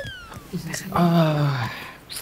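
A man's single drawn-out, slowly falling "oh" groan. It is preceded in the first half second by the tail of a descending whistle-like comedy sound effect.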